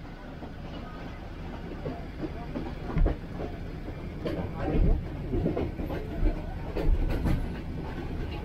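Passenger train carriage rumbling and rattling steadily as the train runs along the track, with a few sharp knocks about three seconds in and again later. Voices are heard in the second half.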